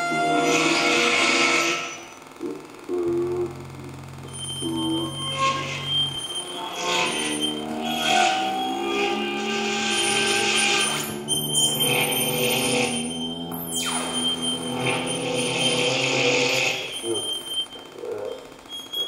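Improvised experimental electronic music played live: shifting electronic tones and bursts of hiss, a steady low drone for a few seconds, and a sharp downward-sweeping tone about two-thirds of the way through.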